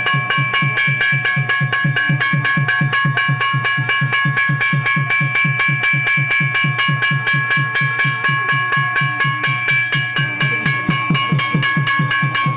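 Fast, even drumbeat with a bell ringing continuously over it, the temple percussion that accompanies a camphor flame (harati) offering.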